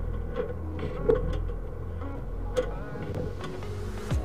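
Sewer inspection camera's push cable being fed down a drain line against a root blockage: a steady low mechanical hum with a few scattered knocks, the loudest about a second in.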